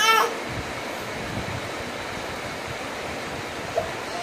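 Baby crying: a short wail ends just after the start, then a pause of about three and a half seconds with only a steady hiss, and a faint brief whimper near the end.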